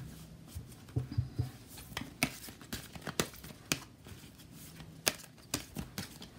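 A deck of oracle cards being shuffled by hand, the card edges flicking and slapping against each other in an irregular run of short, soft snaps.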